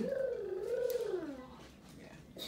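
A woman's voice giving one long, wavering laugh-like note that rises, dips and falls away over about a second and a half.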